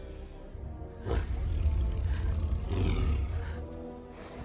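A deep, heavy monster roar from a giant film creature starts suddenly about a second in and surges again near three seconds, over orchestral film score.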